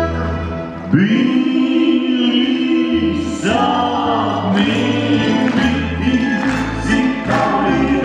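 Live folk-pop song with a male and a female singer singing together, backed by a small band of mandolin-type plucked strings, acoustic guitars, accordion and bass. The accompaniment holds a chord, and about a second in the voices come in on a long held note before moving into the sung phrases.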